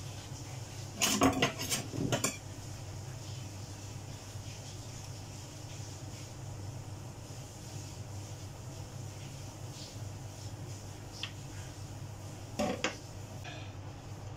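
A kitchen knife and utensils clattering against a stainless steel sink and a plastic colander: a cluster of sharp knocks about a second in and a shorter one near the end, over a steady low hum.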